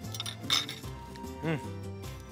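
A metal fork clinking and scraping against a plate a few times in the first half second, over steady background music, with a short vocal sound about a second and a half in.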